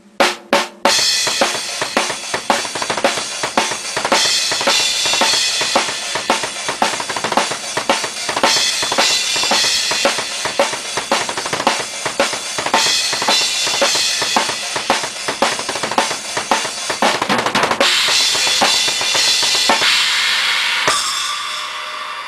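Acoustic drum kit played hard: a few single hits, then a fast, dense groove of drums under constantly ringing cymbals, ending about a second before the end on a cymbal wash that fades out.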